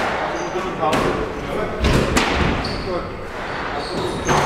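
Squash ball struck by rackets and hitting the court walls during a rally: three sharp hits, the last two close together, ringing in the enclosed court.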